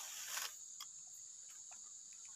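A steady, high-pitched insect drone, with a brief rustle near the start and a few faint ticks.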